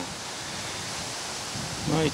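Steady outdoor background hiss with no distinct events, in a pause in a man's speech; his voice comes back right at the end.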